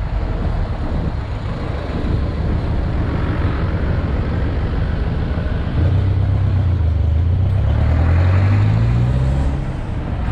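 Jeepney's diesel engine running while it drives, with road and tyre noise. About halfway through the engine grows louder and its low hum climbs slightly in pitch as it pulls harder, then eases just before the end.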